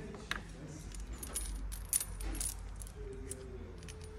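Steel timing chain of a BMW N57 diesel engine clinking as it is handled and laid over its sprockets: scattered light metallic clicks and jingles, clustered around the middle.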